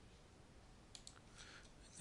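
Near silence with a single faint computer mouse click about a second in.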